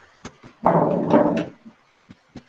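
A dog gives one drawn-out bark lasting under a second, after a couple of faint clicks.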